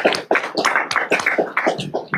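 Applause from a small audience: many separate hand claps in an irregular patter, starting to thin out near the end.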